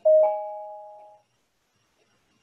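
A two-note chime: a lower note struck, then a higher note about a quarter second later, both ringing out and fading within about a second.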